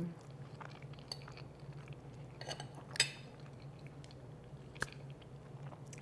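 A person quietly chewing a bite of crisp pan-fried tuna cake, with small mouth clicks and one sharper click about three seconds in.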